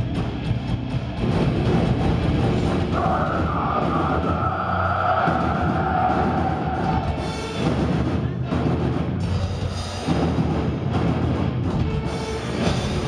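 Metalcore band playing live at high volume: drum kit, distorted electric guitars and bass, with a held high note from about three seconds in that lasts around four seconds.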